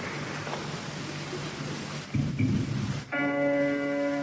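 Hiss and crowd noise of a live audience tape in a large hall, with a few low thumps about two seconds in. About three seconds in, a keyboard chord is struck and held steady.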